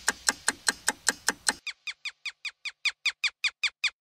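Cartoon clock ticking, sharp ticks about five a second. A little over a second and a half in, the ticks turn into short squeaky chirps, each falling in pitch, that keep the same quick beat and stop abruptly just before the end.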